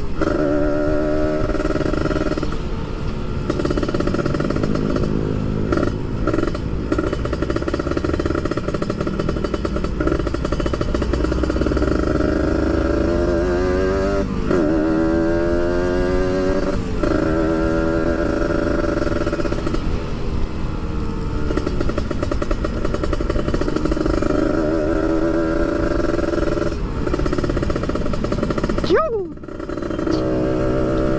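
Kawasaki Ninja 150RR's two-stroke single-cylinder engine under way, its pitch rising and falling repeatedly as the throttle is worked. There is a quick drop and climb about halfway through and a sharp dip near the end.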